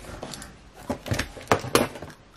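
A cardboard shipping box being opened by hand, its flaps and packing tape giving a few sharp cracks and clicks in the second second.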